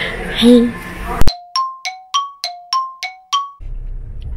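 Chime sound effect edited in at a scene change: a sharp click, then a run of about eight bell-like dings alternating between a lower and a higher note, about three a second, each ringing briefly over complete silence.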